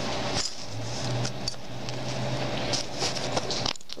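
Handling noise of metal enamel pins being turned over in the fingers: a steady rustle with a few light clicks, over a steady low hum, cutting off abruptly just before the end.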